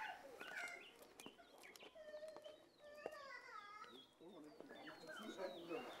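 Faint bird calls, many short chirps and whistled glides, over a quiet outdoor background.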